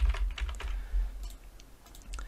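Typing on a computer keyboard: a quick run of keystrokes in the first second, then a few fainter clicks, over a low steady hum.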